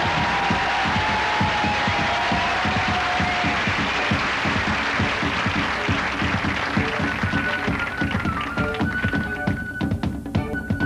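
Fast, dense tapping of dancers' shoes on a stage floor over music. A held instrumental note sounds for the first few seconds, and a higher one comes in near the end.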